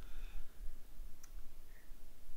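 Quiet room with a steady low hum and one faint, short click about a second in.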